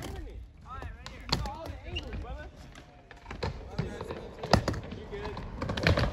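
Skateboard knocks and clacks on a panelled skatepark ramp: several sharp hits spread through, the loudest about four and a half seconds in. Faint voices talk in the background.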